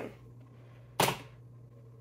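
A single short, sharp click about a second in, over a faint steady low hum.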